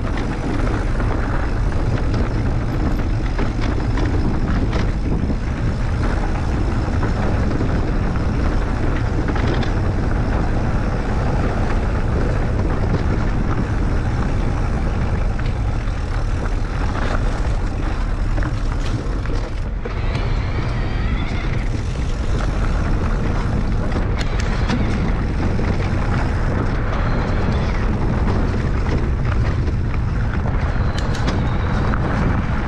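Steady wind rush on an action camera's microphone while riding an electric mountain bike, with its knobby tyres rolling over dirt and gravel and a few knocks from bumps in the trail.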